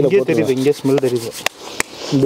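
Hands rubbing crushed eucalyptus leaves between the palms, a dry rubbing under a man's talking, with two sharp clicks near the end.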